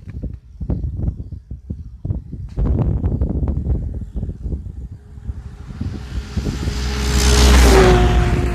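A snowmobile approaches and passes close by, its engine sound swelling to a peak near the end, then its pitch drops sharply as it goes past. Irregular knocks and rustling come before it.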